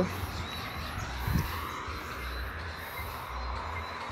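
Open-air ambience on a rural road: a steady hiss with a low uneven rumble and a faint steady high tone, and one short call about a second in.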